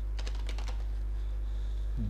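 Computer keyboard being typed: a quick run of keystrokes that stops about a second in, over a steady low hum.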